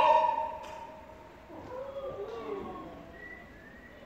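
The last sung note of an operatic phrase dies away in the theatre's reverberation in the first half second. A quieter stretch follows with faint, wavering voice sounds.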